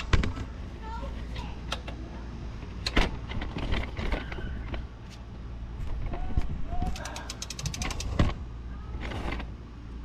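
Hand ratchet clicking in a quick run as it is swung back and forth on an 18 mm bolt of the differential mount, with a couple of sharp metal knocks, one about three seconds in.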